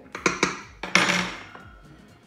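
A metal fork clinking against a stainless steel mixing bowl of dry flour: a few sharp clicks, then a louder knock about a second in, followed by a short ring.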